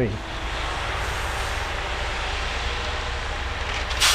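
A ready-mix concrete truck and a Gomaco Commander III slipform curb machine running steadily as the truck's drum discharges concrete into the curb machine: a low engine rumble under an even rushing noise.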